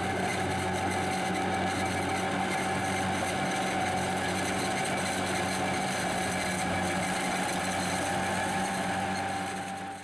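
A tractor-drawn disc mower-conditioner running steadily as it cuts grass: a steady engine drone with a constant high whine over it, fading out near the end.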